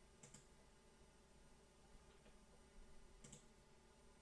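Two faint computer mouse clicks about three seconds apart, over near silence.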